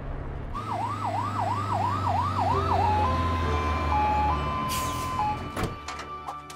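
Cartoon fire truck siren: a quick run of falling yelps, then a two-note hi-lo wail, over a low engine rumble that fades out. A short knock comes near the end.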